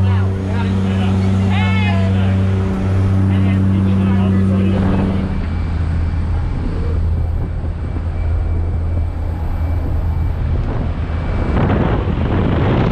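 Propeller engine drone of a skydiving jump plane heard inside the cabin: a loud steady low hum with an overtone. About five seconds in the steady tones weaken into a rougher rumble, and near the end a rush of wind noise rises.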